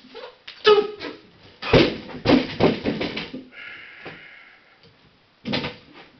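Loaded barbell with 72.5 kg on it knocking and clanking through a lift, its plates hitting the floor with several heavy thuds over about three seconds, followed by a brief metallic ringing. One more knock comes near the end as the bar is set again.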